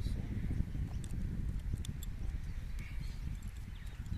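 Wind buffeting the microphone as a steady low rumble, with a few faint light clicks from hands working on the RC car's wheel.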